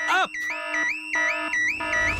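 Cartoon house alarm sounding: an electronic warble that flips up and back in pitch about three times a second, over held chords of background music.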